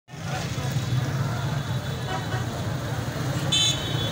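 Crowded market street: motorcycle and auto-rickshaw engines running, with a steady low drone under a hubbub of many voices. A short high-pitched horn toot sounds near the end.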